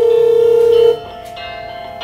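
Mobile phone ringtone ringing: a loud held tone for about a second and a half that stops about a second in, over a quieter melody that carries on, and comes back just after.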